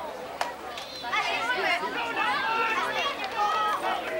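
Several people talking at once, the words indistinct.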